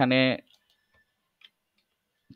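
A man's voice speaking briefly in the first half-second, then near silence with a few faint, irregular ticks.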